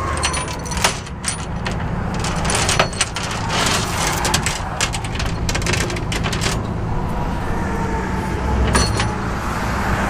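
Tow truck engine idling steadily, with metal tie-down chains clinking and rattling against the steel rollback bed as a car is chained down; the clinking stops about six and a half seconds in, with a brief clink again near the end.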